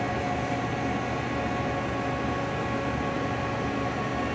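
Steady machine-shop hum from an idle Haas VF-2SS CNC vertical mill, its spindle stopped and its fans and pumps running, with a few faint steady whining tones over a low rumble.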